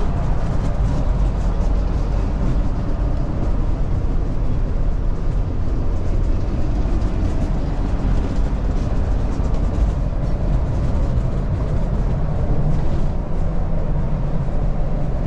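Interior road noise in the back of a 2008 Fleetwood Expedition diesel pusher motorhome at highway speed: a steady low rumble from its rear-mounted 325 hp Cummins 6.7-litre diesel and the tyres on the road.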